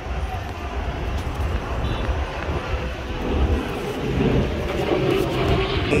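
A low, steady vehicle rumble, mostly deep in pitch, with no clear single event standing out.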